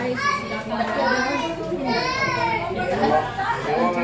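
Children's high voices calling out, rising and falling in pitch, over adults talking.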